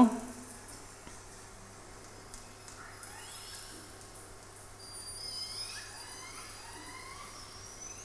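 Recorded killer whale (orca) vocalisations played over a room's loudspeakers: faint whistles and chirps sliding up and down in pitch over a run of clicks, with a thin steady high whistle in the second half.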